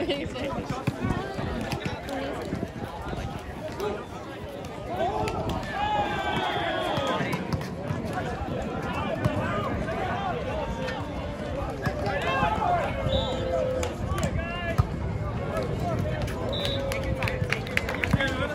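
Players and spectators shouting and calling out at an outdoor volleyball game, over a steady hum of crowd chatter.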